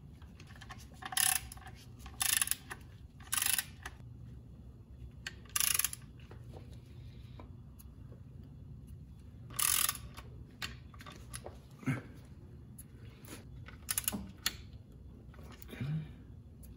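Socket ratchet clicking in about five short bursts, with lighter clicks and taps between, as the clutch pressure-plate bolts are drawn down evenly onto the flywheel.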